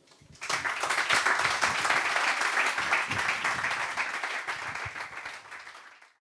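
Audience applauding at the close of a talk: the clapping starts about half a second in, dies down gradually, and is cut off suddenly at the end.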